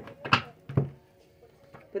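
Playing cards handled on a table: a sharp tap about a third of a second in and a softer knock just before a second in, as a deck is set down. Then near quiet.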